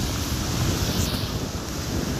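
Wind buffeting the camera's microphone: a steady, low rumbling noise that rises and falls.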